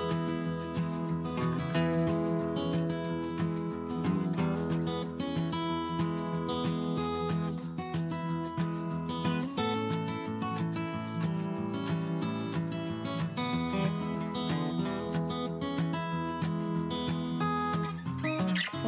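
Background music played on acoustic guitar, with a steady run of notes throughout.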